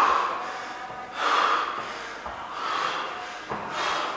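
A winded athlete breathing hard mid-workout: loud, rasping breaths about every second and a half.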